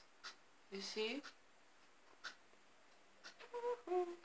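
A few faint crackles and scratches of dyed paper being handled and peeled off a baking tray, with a woman's short wordless 'ooh' sounds about a second in and again near the end.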